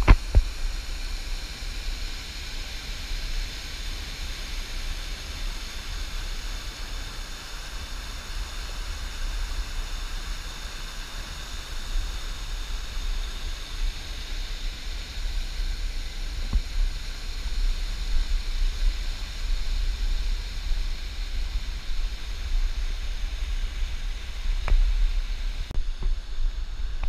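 Rushing water of a small waterfall pouring over granite, a steady loud hiss with a low rumble underneath.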